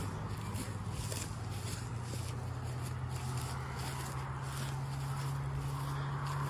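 A car approaching along a country road, its engine and tyre noise a steady low hum that slowly builds as it comes nearer.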